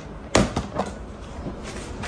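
A sharp knock about a third of a second in, then two fainter knocks, as household things are handled.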